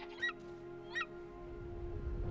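Golden eagle giving two short, high, yelping calls, one about a quarter second in and another at about one second.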